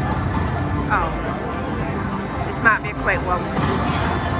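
Slot machine bonus-round sound effects: short sweeping electronic tones about a second in and again near three seconds in, as the reels spin and new bonus symbols land. Under them a steady casino-floor din with chatter.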